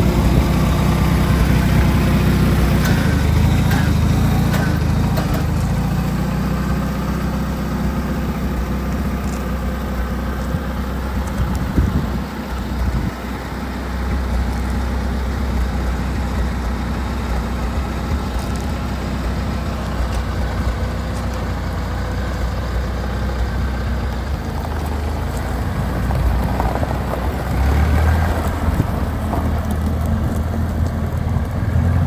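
Allis-Chalmers Series IV farm tractor engine running steadily, with a brief drop and a knock about twelve seconds in, then louder again near the end as the tractor drives off.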